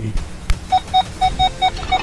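Metal detector sounding a rapid string of short, identical mid-pitched beeps, about six a second, starting under a second in after a single click: the detector signalling a buried metal target.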